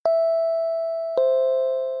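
Two-note descending chime sound effect, a 'ding-dong': a higher ringing tone at the start, then a lower one just over a second later, each fading slowly.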